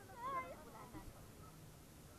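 A woman's short, high-pitched, wavering vocal sound in the first half second, like a squeal or sung note, then only faint water and wind noise.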